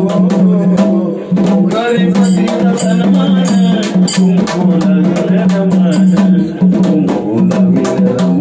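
A male voice singing a devotional song through a microphone, over a hand drum struck with a stick in a quick, steady beat and a steady low held note.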